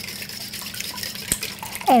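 Wire whisk beating raw eggs in a stainless steel mixing bowl: quick wet sloshing of the liquid, with the whisk's wires ticking against the metal and one sharper knock a little past halfway.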